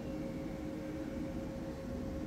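Steady background hum with a faint constant tone and no distinct sounds.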